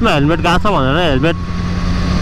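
BMW S1000RR's inline-four engine running at a steady cruise, an even low hum under wind and road noise. A man's voice talks over the first second or so.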